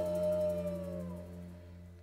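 Closing held note of a small baroque ensemble, its top note sliding downward in pitch and dying away about a second and a half in, leaving a faint low hum.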